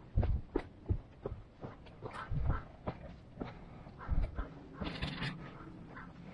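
Footsteps scuffing and striking on a rocky trail in a steady series of short sharp steps, with a hiker's breathing between them.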